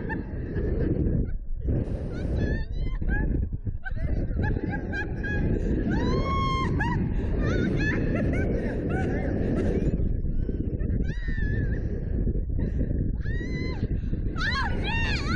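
Two riders on a slingshot ride screaming and laughing in repeated short rising-and-falling cries, over heavy wind rushing across the ride-mounted camera's microphone.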